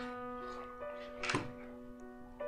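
Electric stage piano playing soft sustained chords, new notes added one after another, with a short knock a little over a second in.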